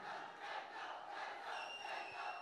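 A large crowd of fans cheering and shouting, faint and even. A thin steady high tone joins about a second and a half in.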